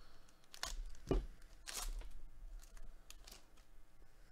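Football trading card pack wrapper being torn open and crinkled by hand, in several short rips and rustles, the loudest about a second in.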